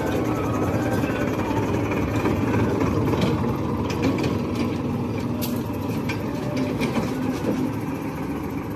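Tourist road train's tractor engine running steadily as it drives past, a little louder around the middle as it passes close.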